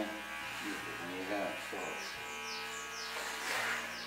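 Electric hair clipper buzzing steadily as it shaves a man's head down to the scalp.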